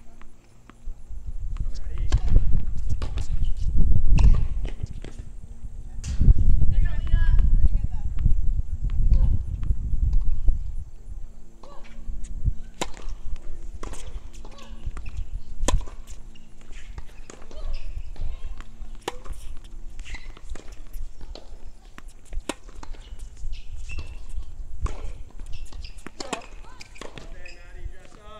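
Tennis ball being hit back and forth on an outdoor hard court: a string of sharp pops from racket strikes and ball bounces, with footsteps. A low rumble, loudest in the first ten seconds.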